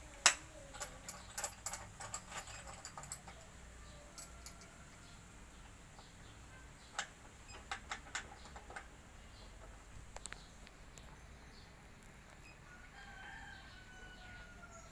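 Scattered sharp clicks and clinks of metal parts as a miter saw is fitted together by hand, the loudest a quarter second in and more in clusters later on. A rooster crows faintly in the background near the end.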